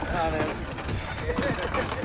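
Men's voices calling out briefly, twice, over a steady low rumble with scattered knocks from a heavily loaded flat trolley being hauled by rope and pushed by hand along a narrow-gauge light railway track.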